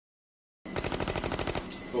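A burst of rapid automatic gunfire, about a dozen shots in roughly a second, starting about half a second in and stopping suddenly.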